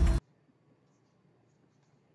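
Loud film soundtrack audio cuts off abruptly a moment in, leaving near silence: faint room tone.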